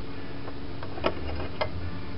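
A couple of light clicks from steel track-plate parts being set into a welding jig, over a steady low hum.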